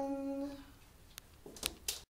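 A man's unaccompanied voice holding the last note of a gospel song, fading out within the first second. A few short clicks follow near the end before the sound cuts off.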